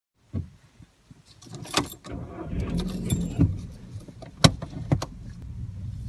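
Keys jangling and a handful of sharp clicks and knocks from handling inside a car, over a low steady rumble that sets in about two seconds in.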